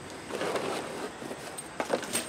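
Faint rustling and handling noise of a cardboard shipping box and its foam packing as a 3D printer's control box and cables are lifted out, with a couple of light clicks near the end.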